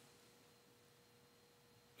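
Near silence: room tone with a faint, steady, pure-sounding hum.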